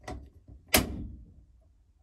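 Two clicks of a race car's rotary battery disconnect switch being turned, the second and louder one about three quarters of a second in. Nothing powers up, because the battery cable is not hooked up.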